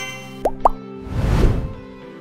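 Logo jingle: music over a held chord, with two quick upward-gliding plop sound effects about half a second in, followed by a swelling whoosh of noise.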